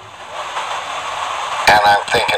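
A steady hiss of background noise fills a pause in speech, and a man's voice starts again near the end.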